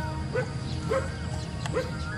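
A dog barking three times in short single barks, over background music.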